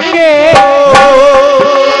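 Devotional kirtan music: a male voice holds one long wavering sung note over steady accompanying tones, with hand-drum strokes beneath.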